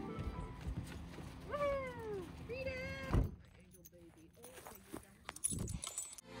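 Two drawn-out vocal calls about a second and a half in, the first sliding down in pitch and the second rising and then holding, over soft background music. A few light clicks and knocks follow near the end.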